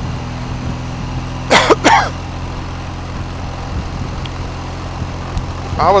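BMW motorcycle engine running steadily on the move, with a constant drone and road noise. About one and a half seconds in, the rider gives two short, loud coughs close to the microphone.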